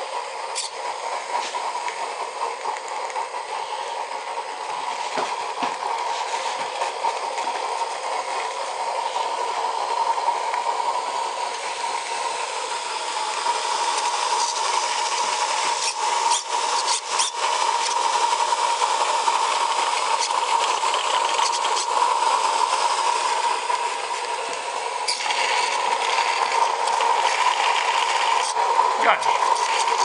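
Live-steam garden-scale model locomotive hissing steadily with a thin whistling tone as it is steamed up, with a few sharp clicks in the middle.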